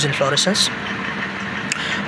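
A spoken word, then a steady mechanical hum with a faint steady tone running on in the background.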